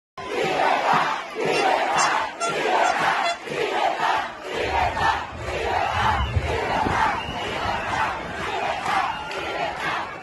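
A huge crowd chanting 'Libertad!' in unison. The shouts come in an even rhythm, about two a second, for the first half, then as longer, drawn-out cries with a low rumble underneath.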